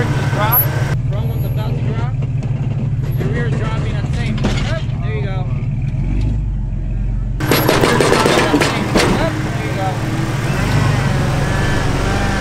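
Jeep engine running steadily at low revs while it crawls over boulders, with spotters' voices calling in the background.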